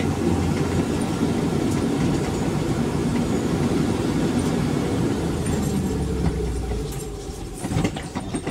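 Engine and road noise of a vehicle driving through town streets, heard from inside the cab: a steady low rumble that eases off about seven seconds in.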